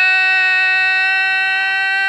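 A loud horn sounding one steady, held note.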